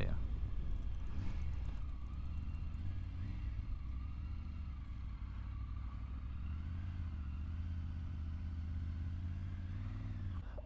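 Three-cylinder Triumph Tiger adventure motorcycle running at low speed: a steady low engine note with small rises and falls in pitch as it rolls slowly along a lane and into a yard.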